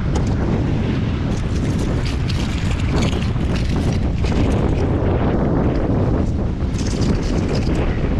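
Wind rumbling on the microphone, with scattered clicks and scrapes of oyster clusters knocking against a wire mesh cage as they are handled.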